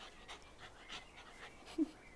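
Small dog panting and sniffing faintly in short breaths, with one brief low vocal sound near the end.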